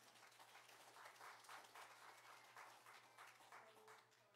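A church congregation applauding, faint and steady, with many overlapping hand claps.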